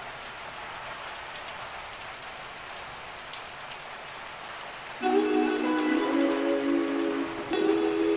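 Steady hiss of rain. About five seconds in, a background music track with a stepping melody starts over it.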